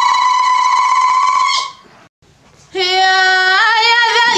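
A woman singing tamawayt, the unaccompanied Amazigh sung call: one long, high held note that breaks off a little under two seconds in, a brief pause, then a lower held note with a wavering pitch that steps up near the end.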